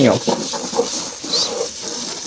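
Broom bristles scrubbing the wet metal floor tray of a chicken cage, with a garden hose spraying water onto it: an even, scratchy scrubbing noise.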